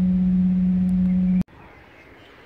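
A steady low hum holding one pitch, cut off abruptly about one and a half seconds in, giving way to faint outdoor background.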